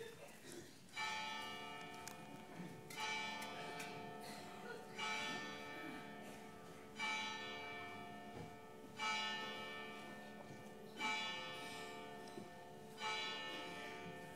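A large church bell struck seven times at an even pace, about two seconds apart, each stroke ringing on and fading into the next.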